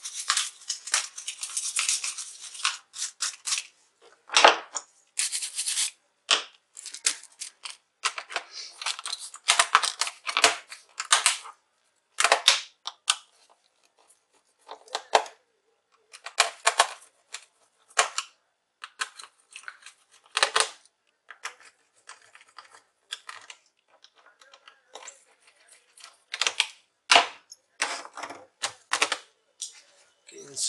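Irregular clicks, taps and scrapes of a laptop's plastic bottom cover and its small screws being handled and fitted back on by hand, in short clusters with brief pauses between them.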